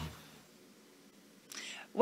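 Near silence as the promo's music and voice-over cut off, then about a second and a half in a short, soft breathy sound, a person drawing breath just before speaking.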